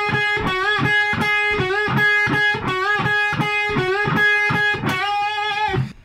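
Electric guitar playing a fast, looped unison-bend lick in triplet rhythm with alternate picking. A note on the G string is bent up two frets to meet the same pitch, which is then picked twice on the B string, over and over. The repeated upward glide into the same note runs until the lick ends just before the close on one last held note.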